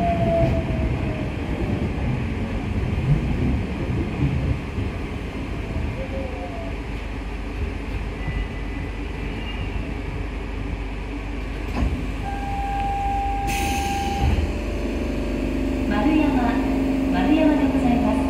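Rubber-tyred New Shuttle automated guideway train heard from inside, rumbling as it slows to a stop, with a falling motor whine at first. About twelve seconds in a steady tone sounds and a short burst of air hiss follows, typical of the doors opening at the station.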